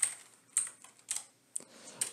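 Computer keyboard keys being typed: a handful of separate keystrokes spread across the two seconds.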